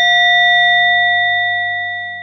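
A struck Buddhist bowl bell ringing on with several clear tones that slowly fade, marking the single prostration after a Buddha's name is recited. A low, steady musical hum lies beneath it.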